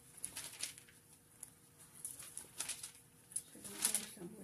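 Thin pages of a large Bible being leafed through by hand: a series of soft papery flicks and rustles, some in quick pairs, the last ones closest together near the end.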